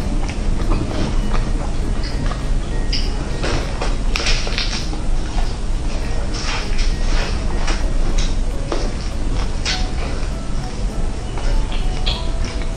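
Close-miked eating of roast chicken: the meat is torn apart by hand, then bitten and chewed with many short, irregular wet crackles and smacks over a steady low hum.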